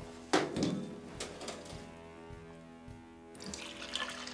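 A single sharp click about a third of a second in, then caffenol developer being poured from a glass beaker into a plastic film developing tank near the end. Soft background music with sustained chords runs throughout.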